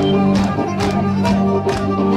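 Live folk-rock band playing loud on stage: held melody notes over a steady drumbeat of about two strokes a second.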